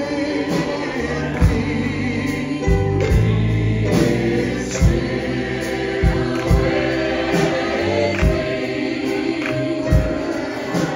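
Live gospel vocal group singing in harmony, backed by piano and a drum kit that keeps a steady beat.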